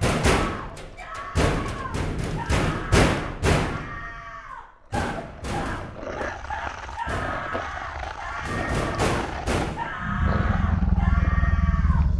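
A run of heavy thumps with pitched tones over them, building to a loud low rumble in the last two seconds.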